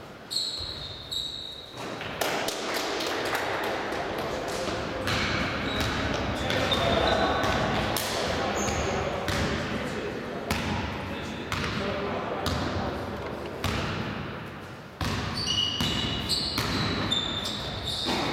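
Sounds of a basketball game echoing in a large gym: a basketball bouncing on the court, with repeated short sharp knocks and brief high squeaks from sneakers on the floor, under the steady talk and shouts of players and onlookers.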